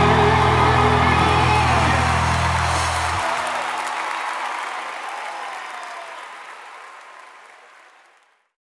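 A live band's final held chord, with steady bass under it, stops about three seconds in, leaving an arena crowd applauding and cheering. The applause fades away steadily to nothing by the end.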